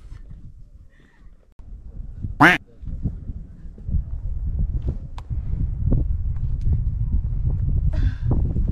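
A woman's short strained cry about two and a half seconds in, a brief wordless sound of effort while scrambling up bare rock on hands and feet. From about four seconds on, low wind rumble on the microphone with small knocks and scrapes.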